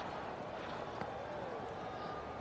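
Steady, low ambient noise from the cricket ground, with a faint tick about a second in.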